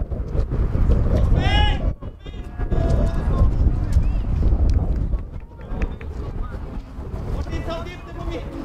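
Voices shouting and calling out across an outdoor football pitch, with a loud shout about a second and a half in, another just after, and more calls near the end, over a steady low rumble of wind on the microphone.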